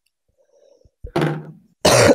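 A man clearing his throat close to a microphone: two short rough bursts, one about a second in and a louder one near the end, after near silence.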